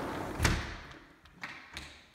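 A sharp thump about half a second in, followed by two lighter knocks, over a hiss that fades away.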